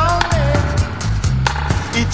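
Roots reggae backing track: a deep, prominent bass line under steady drums and hi-hat, with a falling note trailing off in the first half-second.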